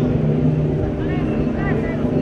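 Street crowd at a procession, with voices rising about a second in over a steady low drone.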